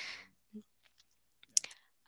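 A short pause in conversation: a breath trails off, then a short cluster of faint clicks comes about one and a half seconds in.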